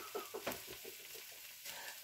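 Faint, steady sizzle of pancake batter frying in a hot pan.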